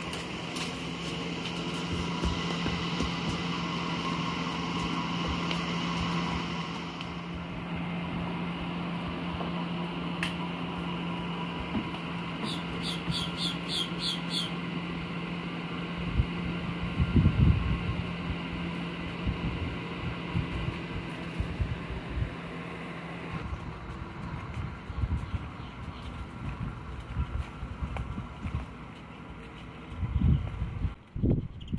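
A steady low mechanical hum that stops about three quarters of the way through, with a quick row of ticks near the middle and scattered thumps from about halfway on.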